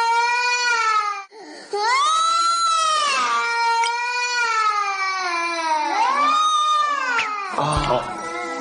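A baby crying as she wakes: three long wails, each rising then falling in pitch, with a short break for breath about a second in.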